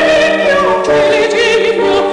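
A soprano singing a classical aria with a wide vibrato, over a piano accompaniment.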